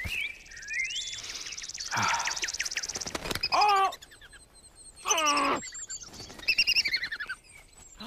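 Birds chirping and trilling in a woodland soundtrack, with a fast high trill in the first few seconds. Two louder short calls slide downward in pitch, at about three and a half and five seconds in.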